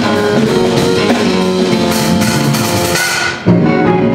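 Live soul-jazz band playing an instrumental passage on keyboards, bass guitar, drums and electric guitar. About three seconds in the band drops back briefly, then hits a loud accented chord together.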